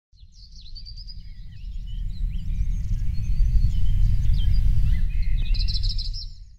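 Outdoor ambience of several birds chirping and calling over a loud, steady low rumble, fading in over the first few seconds.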